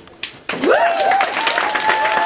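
Audience applause and cheering breaking out about half a second in, with rising whoops from the crowd, at the end of an acoustic guitar song.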